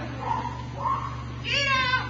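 A dog giving a loud, high-pitched whining cry about one and a half seconds in, its pitch falling at the end, after a run of fainter short yips.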